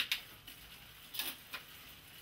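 Bicycle chain and rear cassette clicking a few times as the cranks are turned by hand on a repair stand, with a sharp click at the start and a few more a little past a second in. The shifting has just been tuned with the rear derailleur's limit screws and barrel adjuster.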